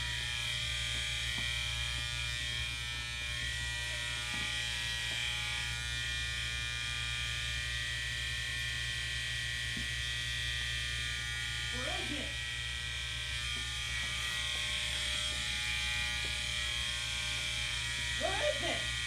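A steady electrical buzz made up of several constant tones, with a low hum underneath, unchanging throughout. A short muffled voice sounds about twelve seconds in.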